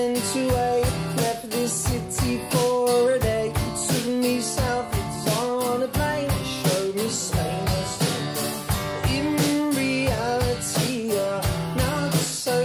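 Live band performance: a male lead singer sings over strummed acoustic guitars, with a steady beat throughout.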